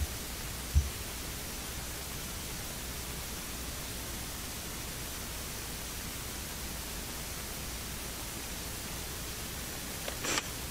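Steady hiss with a low hum underneath, the noise floor of the microphone and sound-system feed while nobody is at the microphone, with a single short low thump about a second in.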